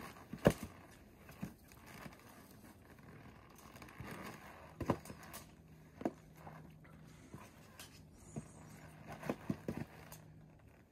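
Irregular knocks and clicks of climbing hardware and boots against rock as a climber works up a fixed rope on ascenders. The loudest knock comes about half a second in, and a few more come near the middle and near the end.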